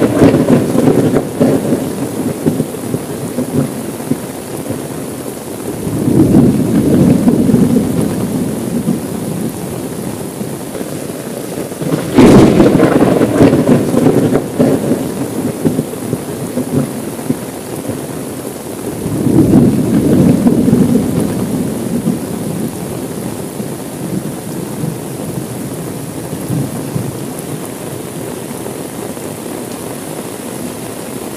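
Steady heavy rain with rolls of thunder rumbling in about every six seconds. The sharpest clap comes about twelve seconds in.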